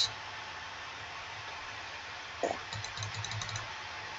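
Low steady room hiss. Near the end comes a short soft sound, then a quick run of about eight light clicks in under a second, from typing on a computer keyboard.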